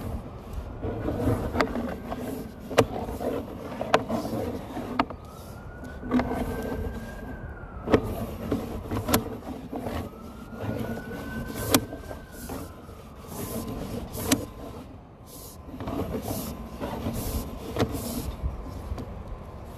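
Sewer inspection camera's push cable being pulled back and coiled onto its reel: sharp clicks and knocks every second or two over a low rumble. Twice there is a whine that rises and falls over a couple of seconds.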